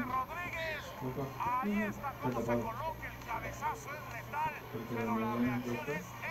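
Continuous talking with faint background music and a steady low hum underneath; no other distinct sound stands out.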